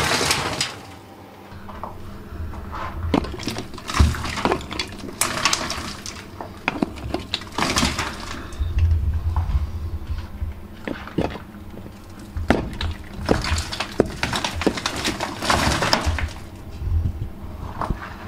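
Hammer blows on a crumbling cave ceiling, knocking loose plaster and rock that falls as rubble, in an irregular run of strikes with stretches of rattling debris. The loose material is being chipped away to get back to solid rock.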